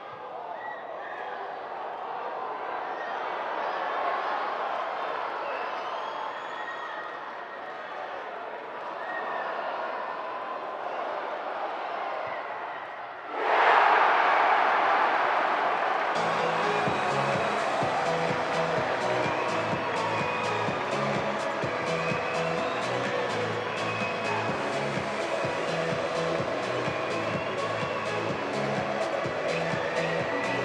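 Live match sound of players' shouts over stadium ambience, then a sudden loud swell of noise a little under halfway through, after which background music with a steady beat plays.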